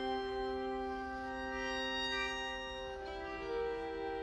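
String quartet playing long, sustained bowed chords in an instrumental passage with no voice. The lowest held note drops out and new notes come in about three seconds in.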